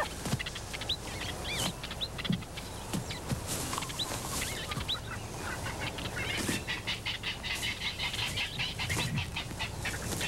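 Birds chirping and calling, with a fast run of rapid chirps in the second half.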